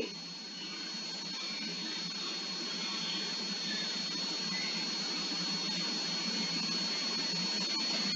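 Steady background hiss with a faint high-pitched whine held throughout, slowly growing a little louder.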